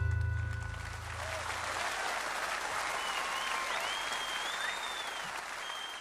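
The band's final guitar chord rings out and fades over the first couple of seconds while a live audience's applause rises and carries on, with whistling from the crowd a few seconds in.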